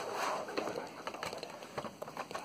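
Faint handling noise from a cardboard trading-card collection box: a soft rustle, then a few light ticks and taps.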